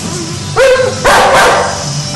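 Blue-fronted amazon parrot calling: a short pitched call about half a second in, then a loud, harsh squawk about a second in.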